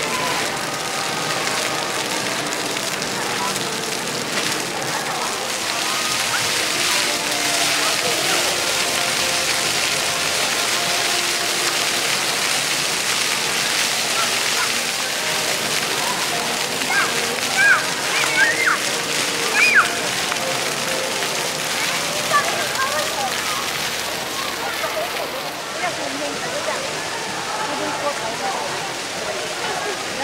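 Ground-level fountain jets of a splash pad spraying and splattering onto wet pavement, a steady rushing hiss. Voices chatter throughout, and children's short high calls stand out about two-thirds of the way through.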